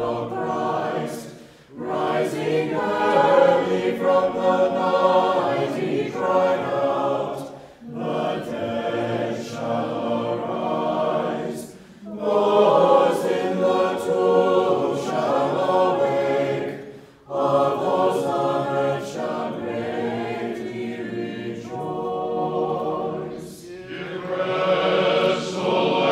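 Choir singing Orthodox funeral chant a cappella, in phrases of four to six seconds broken by short pauses for breath.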